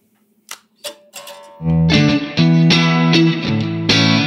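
Electric guitar played through a Vox MVX150H amp head. There are a couple of short string clicks, then from about a second and a half in, loud chords ring out.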